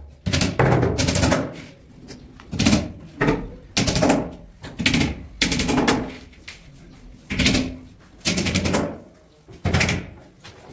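A series of loud, sharp bangs in an echoing room, about one a second at an uneven pace.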